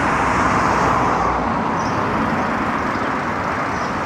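A road vehicle passing close by, a steady rush of tyre and engine noise that is loudest about a second in and slowly fades.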